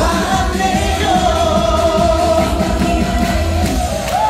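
Male singer holding one long, slightly wavering note into a microphone over a karaoke backing track with a steady beat.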